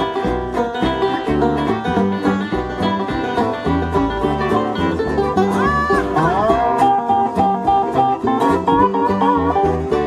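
Bluegrass band playing an instrumental break: fast banjo picking over guitar and a stepping bass line. About six seconds in, a sliding melody line of long held notes comes in on top.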